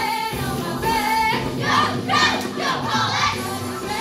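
A group of young female voices singing a musical-theatre number in chorus over a recorded backing track.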